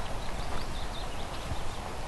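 Outdoor ambience of people walking through long grass: soft, uneven footsteps and rustling over a steady wind rumble on the microphone.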